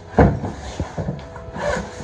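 A single solid knock, then rustling and small knocks from handling a padded jacket as it is opened.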